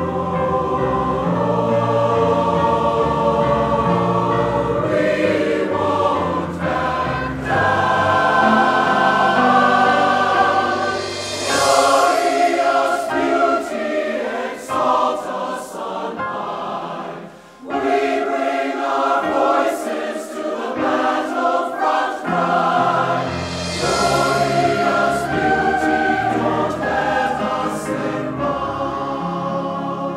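Large mixed chorus singing sustained, held chords. About halfway through, the low end drops away for several seconds, with a brief dip in level, before the full sound returns.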